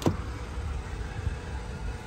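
A short click right at the start, then a low, uneven rumble of handling noise on a handheld phone microphone as it is carried.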